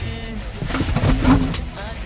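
A song with a singing voice playing, with a louder burst of noise about halfway through.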